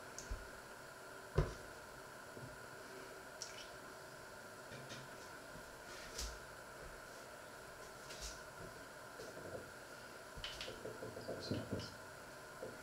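Faint room tone with a steady hum and scattered light clicks and knocks, the sharpest about a second and a half in, and a run of small ticks near the end.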